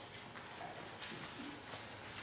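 Quiet room tone with a few faint, soft taps spread through the pause.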